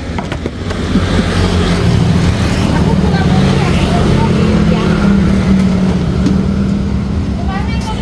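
A motor vehicle's engine running close by: a steady low drone that sets in about a second in and holds until near the end, with faint voices underneath.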